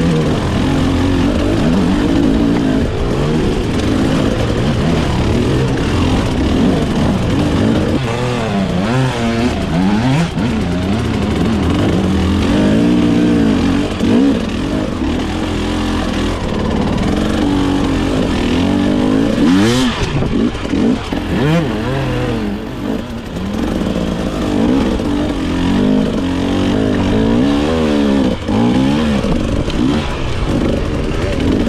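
Enduro motorcycle engine heard from on board, revving up and down in quick, uneven throttle bursts while climbing a steep rocky slope. One sharp knock rings out about two-thirds of the way through.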